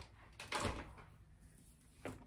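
A single short clunk about half a second in, from handling the portable spot cleaner's hose and tool, then quiet room tone.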